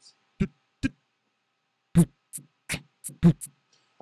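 Mouth-made beatbox drum samples (toms, kick and hat-like hiss sounds) triggered one at a time in a drum sampler. There are two short hits, then a quicker run of about six hits from about two seconds in.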